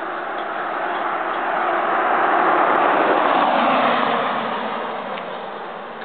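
A Jeep driving past on the road, its noise swelling to a peak about halfway through and then fading away.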